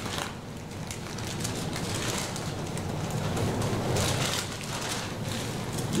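Bible pages rustling as they are leafed through and turned by hand, a run of crisp paper rustles.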